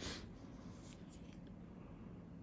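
Faint scratchy rubbing of a cotton pad wiping across skin: one brief scrape at the start, then a few light scratches about a second in, over a low steady hum.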